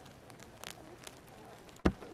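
Honey bee colony humming on a comb, with a light knock about two-thirds of a second in and a hard thump on the hive near the end: a knock given to set off the colony's startle reflex.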